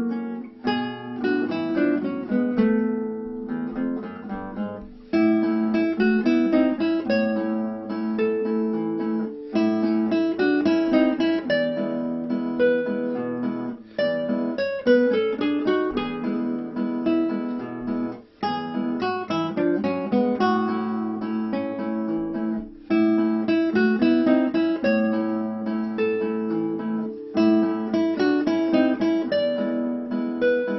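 Nylon-string classical guitar fingerpicked in a two-guitar duet arrangement of a Brazilian folk song: a busy melody of plucked notes over bass notes, in phrases with brief pauses between them.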